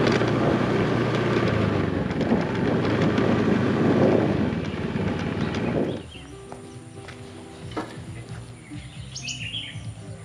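Motorbike engine running with wind and road noise while riding. It cuts off abruptly about six seconds in, leaving a much quieter stretch with a few bird chirps near the end.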